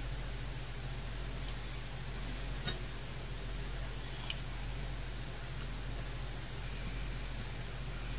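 Quiet room tone with a steady low hum, broken by a few faint clicks and taps as a computer power supply's circuit board and metal case are handled.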